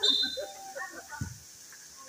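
Women's voices shouting and calling out during a volleyball rally, loudest right at the start with a high-pitched cry.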